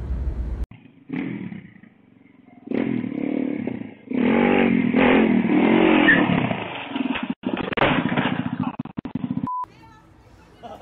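Small dirt bike engine revving in several uneven bursts, its pitch rising and falling. A short high beep sounds near the end.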